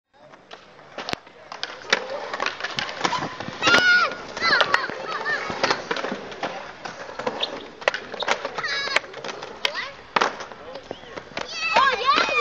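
Skateboards on a concrete skatepark: wheels rolling and repeated sharp clacks and knocks of boards on the concrete and ramps, with children's voices and shouts mixed in.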